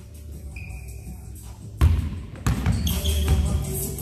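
A basketball bouncing on a gym floor, with background music that turns much louder about two seconds in.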